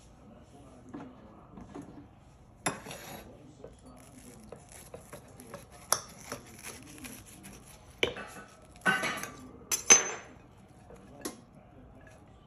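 A knife sawing through a toasted grilled cheese sandwich, its blade scraping and clicking against a ceramic plate in short irregular strokes. The loudest scrapes come about eight to ten seconds in.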